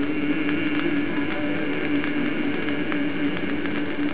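Old vinyl gospel record at the end of a song: the accompaniment holds one steady note after the voice has stopped, under a steady surface hiss with scattered crackles.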